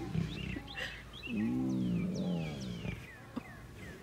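A lioness giving one drawn-out vocal call about a second in, rising then falling in pitch and lasting under two seconds.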